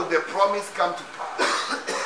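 A man's voice in several short bursts with coughing.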